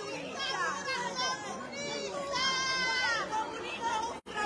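Several people's voices talking over each other in a heated street confrontation, the words not clearly made out, with one drawn-out raised voice about two and a half seconds in.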